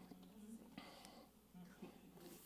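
Near silence: room tone with faint, indistinct murmuring.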